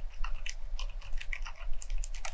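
Fast typing on an FL-Esports CMK75 fully lubricated mechanical keyboard with silent lime switches: a quick, irregular run of soft keystroke clicks, several a second.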